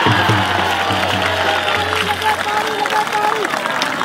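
Music: a long, wavering high note held for about three seconds over a low steady drone, following drum beats, with crowd noise and some applause as a wrestler is thrown.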